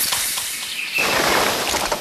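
Beer spraying in a foaming gush from a freshly opened can, a steady high hiss that fills out lower about a second in.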